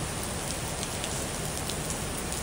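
Heavy monsoon rain pouring steadily onto a paved street: a dense, even hiss with the odd separate drop ticking out above it.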